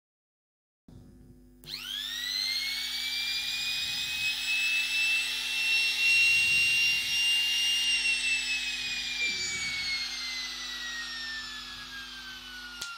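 Dongcheng DMP02-6 electric wood trimmer (350 W trim router) running free with no load in the hand: its motor whines up to speed about a second and a half in and runs steadily. From about eight seconds in the whine falls slowly in pitch as the motor winds down.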